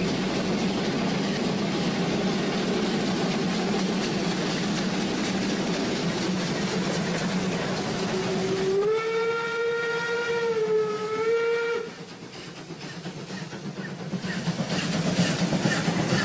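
Steam locomotive: a steady hiss and rumble, then its steam whistle blows for about three seconds around the middle, sliding up slightly at the start and cutting off sharply. Near the end the train noise builds up again.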